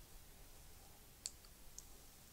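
Near silence: faint background hiss with two brief, faint clicks, one about a second and a quarter in and another near the end.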